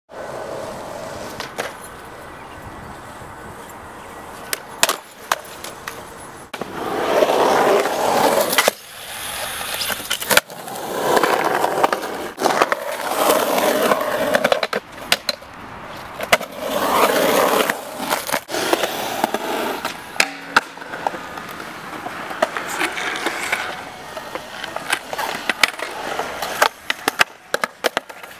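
Skateboard on concrete: several stretches of wheels rolling, broken by many sharp clacks of the board popping and landing.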